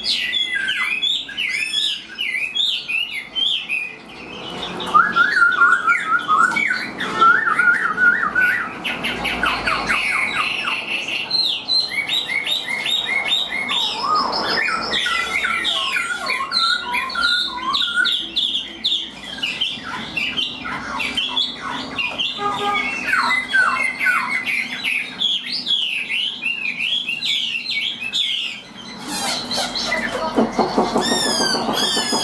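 A caged Chinese hwamei singing a long, varied song of rapid whistled phrases, slurred glides and trills, switching from one phrase type to the next every few seconds with only brief pauses.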